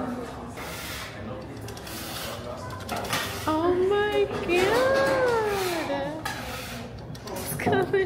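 A hand-cranked pasta machine is being turned to cut a sheet of dough into spaghetti, with light metal clatter. Over it, about halfway through, a person's drawn-out sing-song voice rises and falls in pitch for a couple of seconds; it is the loudest sound.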